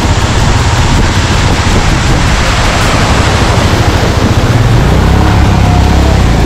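Loud rushing noise of a motorcycle riding through a stream beneath a waterfall: splashing, running water and wind on the camera microphone over the low rumble of the bike's engine. The engine note grows steadier near the end.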